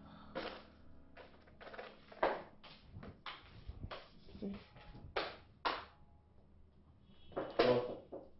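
Scattered taps, knocks and light clatter of objects being handled and set down while a room is tidied, irregular and uneven in loudness, with a cluster of louder knocks near the end.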